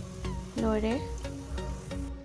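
Hot oil sizzling and crackling around a gram-flour-battered bread pakora being deep-fried, as it is lifted out of the pan, over background music; a short word is spoken about a third of the way through.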